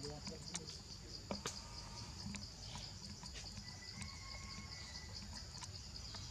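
Steady, high-pitched insect chorus with a fine pulsing buzz, with a few sharp clicks and snaps scattered through it.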